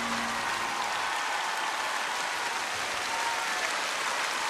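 Large concert-hall audience applauding steadily at the end of a song. The song's last sustained note dies away in the first half second.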